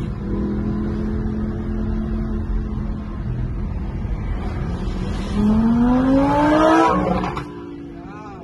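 Lamborghini sports-car engine heard from inside a following car: a steady drone, then a loud rev rising in pitch from about five seconds in as the car accelerates past, dropping away shortly before the end.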